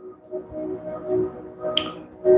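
Soft background music of sustained, held tones, with a single short, sharp click near the end.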